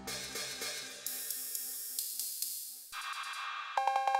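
Elektron Analog Rytm MK2 drum machine playing a sampled hi-hat, a run of bright hiss-like hits ringing out. Near the end its analog cowbell sounds a few quick two-tone strikes.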